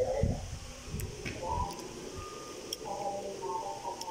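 Low thumps and rubbing from a phone being handled against its microphone during the first second and a half, with brief faint murmurs of a boy's voice.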